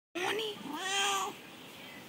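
Domestic cat meowing twice: a short meow near the start, then a longer, drawn-out meow held at a steady pitch.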